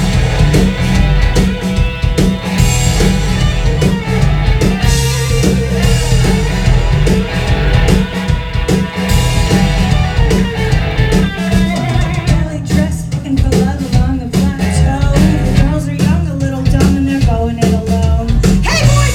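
A live rock band playing loudly, with drum kit, bass and electric guitar, heard from within the audience.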